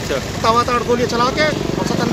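A man speaking, then a vehicle engine running steadily, coming in about a second and a half in and holding an even low hum.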